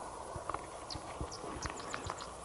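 Quiet night ambience with scattered faint clicks and knocks from handling a camera, and a few short high chirps of insects.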